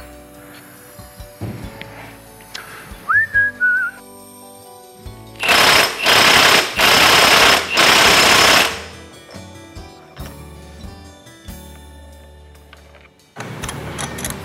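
Impact wrench hammering the front sprocket's mainshaft nut tight, a loud rattling run of about three seconds broken into a few bursts, around the middle. Soft background music underneath.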